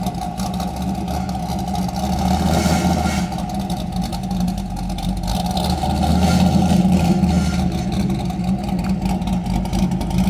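Chevrolet C5 Corvette's V8 engine running as the car drives slowly, with a deep exhaust rumble that swells louder twice, about two and six seconds in.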